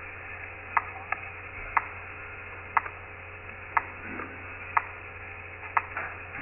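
A clock ticking about once a second on the audio of an old time-lapse film transferred to video, over a steady low hum.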